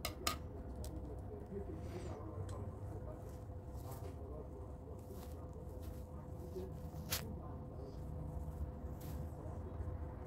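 Steady low hum with a faint constant tone under it, broken by a few sharp clicks. The loudest click comes just after the start and another about seven seconds in, as the hand and pen come back down onto the notebook page.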